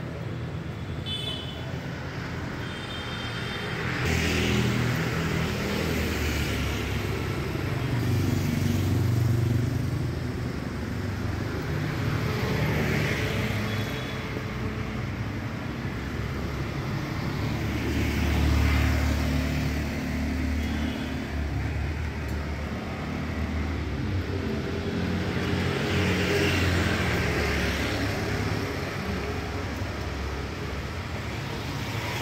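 City street traffic: motor scooters, motorbikes and cars passing close by, swelling every few seconds over a continuous low engine rumble, with a few brief horn beeps, mostly near the start.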